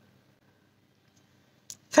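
Near silence: room tone, broken near the end by a short click just before a woman's speech begins.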